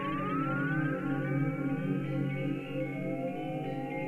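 Electronic synthesizer music: sustained low chord tones with a series of repeated, overlapping rising glides above them that sound like a siren sweep.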